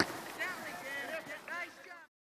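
Faint, distant voices of players and spectators calling out across a soccer field, several short shouts about half a second apart. A sharp click at the very start is the loudest thing.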